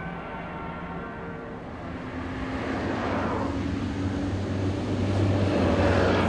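A low, sustained music chord fades out over the first couple of seconds, then a city bus's engine and tyre noise grows steadily louder as it approaches along the road.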